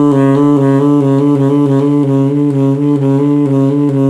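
Saxophone trilling between low B-flat and low B, a semitone apart, played with the conventional fingering: the left little finger rolls between the two low keys. That fingering makes the trill awkward to play quickly.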